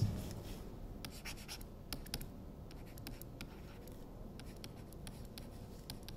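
Stylus writing on a tablet: a faint, irregular run of light ticks and scratches as the pen tip strikes and drags across the surface, starting about a second in.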